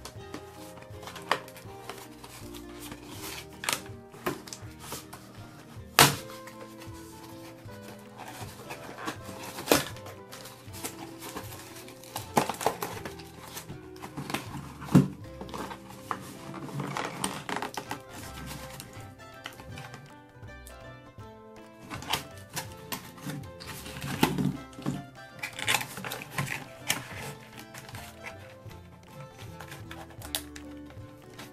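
Cardboard and plastic toy packaging being pulled open by hand: scattered sharp clicks, taps and crinkles, busiest about halfway through and again near the end, over steady background music.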